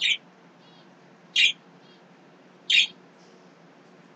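A bird chirping: short, high chirps repeated about every one and a half seconds, three in all.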